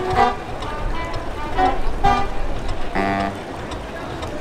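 Short brass notes from a brass band, with crowd voices behind them, and one longer toot a little after three seconds in.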